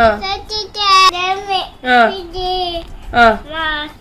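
A toddler's high-pitched voice chanting in a sing-song way, several short phrases with brief gaps, as he recites the days of the week.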